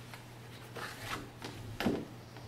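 Cardboard motherboard gift box being opened and its windowed inner display box slid out: cardboard rubbing and scraping, with a sharp knock just before the end.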